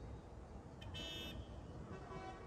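Low rumble of street ambience, with a short high-pitched beep or squeal lasting about half a second, starting about a second in.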